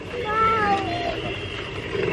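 A short, high vocal cry that falls in pitch over under a second, cat-like in sound, over steady background murmur.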